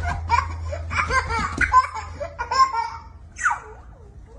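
A toddler laughing in a string of short giggles that fade out near the end, over a steady low hum.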